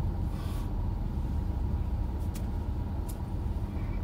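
Steady low rumble of an SUV's engine and tyres, heard from inside the cabin as it rolls slowly and turns through a parking lot, with a couple of faint clicks about halfway through.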